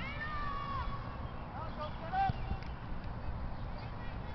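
Distant high-pitched shouts and cries from young players and spectators across a soccer field: a few short rising-and-falling calls, one longer falling cry near the start, over a steady low background rumble.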